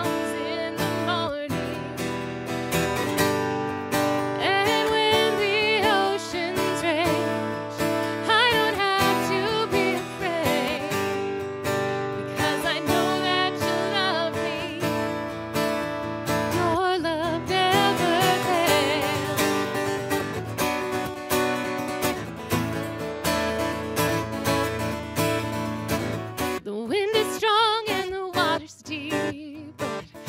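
A woman singing a slow worship song while strumming an acoustic guitar.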